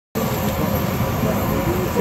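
Steady airliner engine noise on the apron, a low hum with a thin high whine, with people's voices talking underneath.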